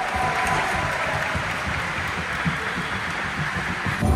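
Large crowd clapping, a steady dense applause that carries on through the whole stretch, echoing in a big indoor hall.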